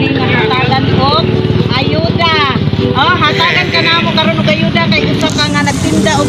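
Women's voices talking and exclaiming with swooping pitch, loudest about two to three seconds in, over the steady running of a vehicle engine nearby.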